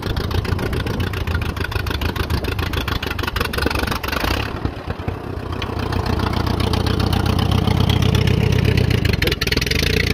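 Allis-Chalmers WD tractor's four-cylinder engine running with steady firing pulses. It dips about halfway, then builds louder before easing off near the end. The engine is tired and badly in need of a tune-up and carburettor work.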